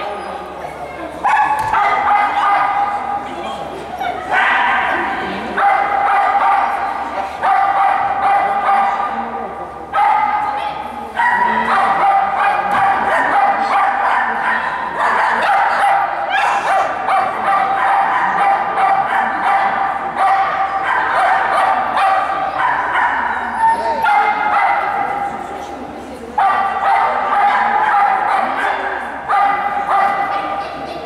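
A dog barking and yelping in a high pitch almost without pause, in long runs of several seconds broken by brief gaps.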